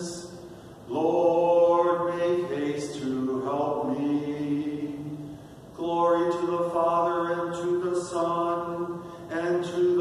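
A man's solo voice singing unaccompanied in slow, held notes. The voice comes in long phrases, each starting after a short breath: one about a second in, one just past halfway, and one near the end.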